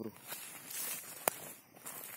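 Footsteps on dry leaf litter and twigs, with one sharp click a little over a second in.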